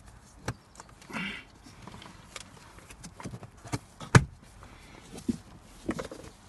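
Scattered light plastic clicks and knocks as a new cabin air filter is handled and worked into its housing behind a 2015 Ford Transit's glove box, the sharpest knock about four seconds in.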